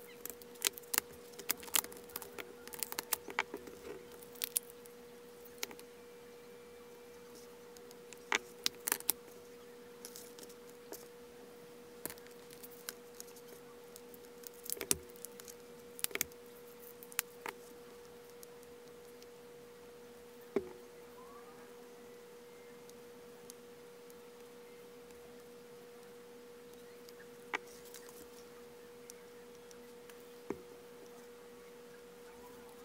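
Light plastic clicks and small rattles of diamond-painting drills and their little plastic storage containers being handled, busiest in the first few seconds and scattered after that, over a faint steady hum.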